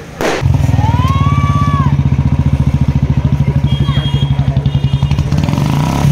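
A sharp bang just after the start, then a vehicle engine running close by with a fast, even throb. A short whistle rises and falls about a second in.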